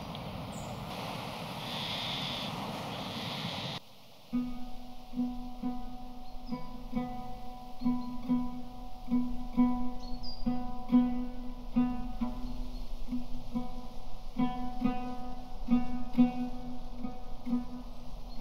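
An even outdoor rushing noise for about four seconds, cut off abruptly, then a plucked acoustic guitar playing a slow, repeating pattern of notes over a recurring low note.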